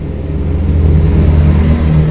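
A loud, steady low engine rumble that starts suddenly and builds over the first half second.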